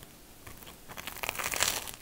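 Crunch of a bite into toast topped with a fried egg and cabbage, a crackly burst starting about a second in.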